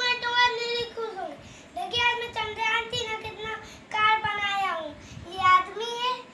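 A young boy's voice in drawn-out, sing-song phrases, each held on a steady pitch and falling away at the end, about four phrases with short pauses between.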